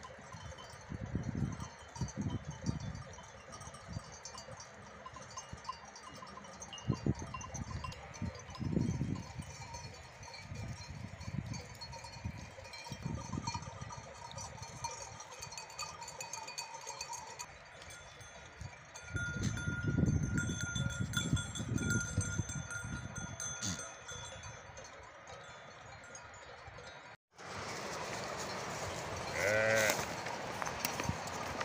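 A flock of sheep and goats on the move, bleating now and then, with bells on the animals ringing and clinking throughout. Low rumbling thumps come and go, loudest about two-thirds of the way in, and the sound breaks off sharply near the end.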